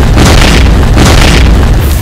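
Loud cinematic intro sound effect: a deep boom and rumble under dense rushing noise that swells in waves, having cut in abruptly from silence.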